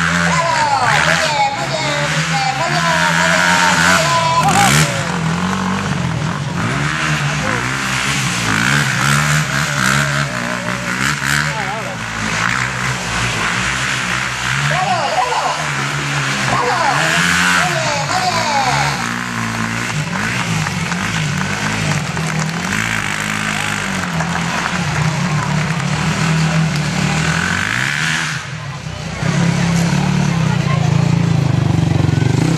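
Sport quad bike engine revving up and down repeatedly as the ATV is ridden around a sand bullring, with voices over it.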